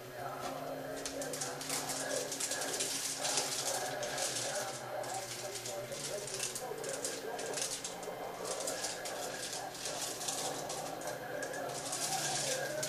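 Native American chanting music plays continuously, with wavering chanted voices over a steady low drone and an irregular crackle on top.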